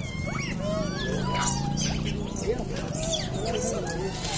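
Rhesus macaques calling: many short, overlapping rising-and-falling calls, with sharper high chirps among them. A low steady hum runs underneath.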